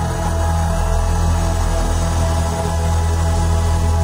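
Live band music: a sustained chord held steady over a deep bass note, without drums or singing.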